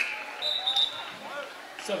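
Gymnasium crowd murmur with faint distant voices, and a short high squeak about half a second in. The scoreboard horn, sounded for a substitution, cuts off right at the start.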